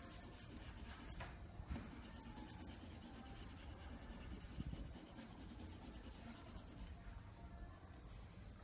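Faint scratching of a colored pencil shading back and forth on paper.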